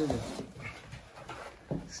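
Faint rustling and handling of a fabric cover being worked off a floorstanding loudspeaker, with a single soft knock shortly before the end.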